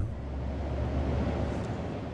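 Car driving, a steady road and engine rumble heard from inside the cabin.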